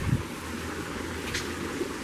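Steady low rumble and hiss of wind on the camera microphone outdoors.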